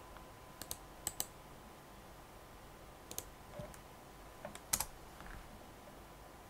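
A few sparse, soft clicks of a computer mouse and keyboard, scattered singly and in pairs, over a faint steady background hum.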